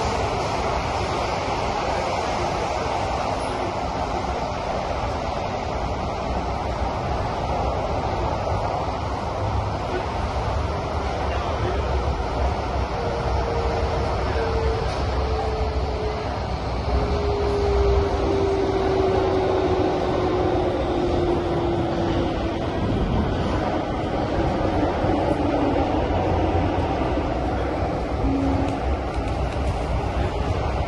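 Inside the carriage of an SMRT CT251 train on the move: a steady rumble and rush of the running train. About halfway through, a thin whine slides slowly down in pitch.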